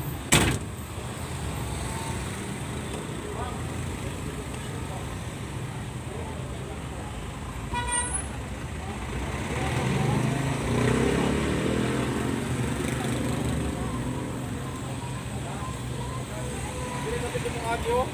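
Truck engine idling steadily, heard from inside the cab, with traffic around it. A sharp knock comes just after the start, and a short vehicle horn toot sounds about eight seconds in.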